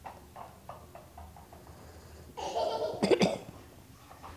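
A toddler's loud, shrill squeal lasting about a second, starting a little past halfway, after a few faint short sounds of play.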